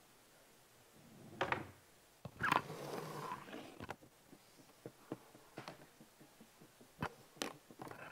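Handling noise from a clip-on microphone being fitted: two close rustling bursts in the first few seconds, then a string of sharp clicks and knocks.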